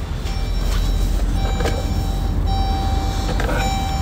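Large vehicle's diesel engine idling with a low, steady rumble. An electronic tone, steady in pitch, sounds on and off over it from about a second and a half in.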